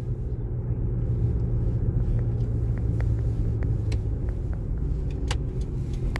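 Steady low rumble of a car's engine and road noise heard from inside the cabin while driving, with a few scattered light clicks.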